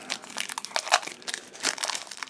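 Clear plastic film wrapper being peeled off by hand and crinkling, a run of irregular crackles.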